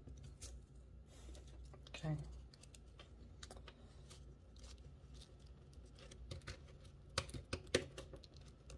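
Stacks of cardstock cards being handled and set down on a glass desktop: scattered light clicks and taps, with a run of sharper taps near the end as the stack is squared up.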